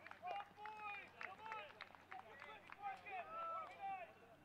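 Soccer players shouting short calls to one another across the field, several voices overlapping, heard faintly.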